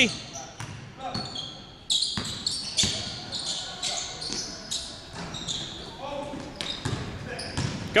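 Basketball being dribbled on a hardwood gym floor, with sneakers squeaking in short high chirps and players calling faintly, all echoing in a large gym.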